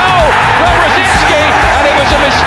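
Loud football stadium crowd cheering a goal, mixed with background music.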